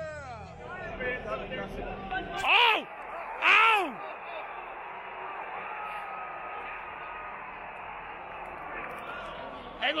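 Men yelling at a baseball game: a few short shouts, then two loud, long yells with rising and falling pitch about three seconds in, followed by steady ballpark background noise.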